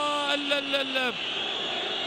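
A man's commentating voice holding one long drawn-out syllable for about a second, then steady background noise.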